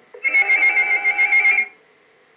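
A shrill, rapidly trilling sound effect, warbling about ten times a second, that starts a moment in and cuts off after about a second and a half.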